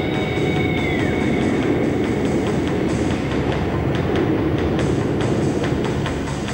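Dramatic soundtrack music mixed with a steady, dense rumbling sound effect of fire burning. A high tone slides down and fades away about a second in.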